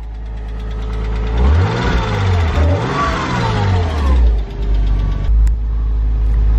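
1999 Porsche Boxster's 2.5-litre flat-six idling, revved lightly about a second and a half in, rising and falling, then settling back to idle. The knock it has had since being restarted after years of sitting is getting quieter.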